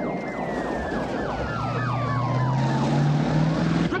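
Police car siren wailing in rapid repeating sweeps over the car's engine, which revs up in pitch during the second half. A long falling tone slides down underneath.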